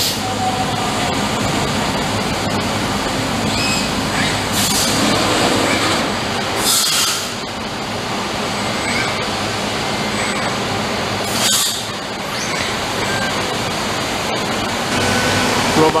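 Steady hum of shop machinery, broken by three short bursts of hissing air while the Fanuc LR Mate 200iD six-axis robot arm moves in the machine's automation cell.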